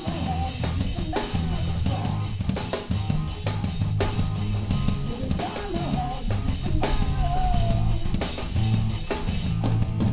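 Live rock band playing: a drum kit pounding out a steady beat on bass drum and snare with cymbals, under amplified guitars holding low notes and a wavering lead line, with no vocals.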